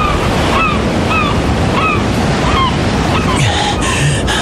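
Ocean surf washing steadily, with short bird calls that each drop in pitch, repeating every half second or so.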